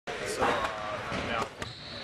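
Basketballs bouncing on a gym floor: a few sharp, irregularly spaced thumps.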